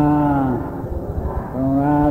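A man's voice chanting a Buddhist recitation in a low, steady monotone. One long held syllable fades about half a second in, and after a short pause another held syllable begins near the end.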